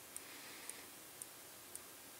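Near silence: room tone with faint, regular ticking about twice a second.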